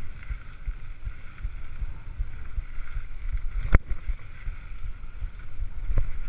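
Mountain bike rolling fast down a dirt trail, picked up by a camera mounted on the bike or rider: a steady low rumble of the tyres and bike over the ground, with a single sharp knock about four seconds in.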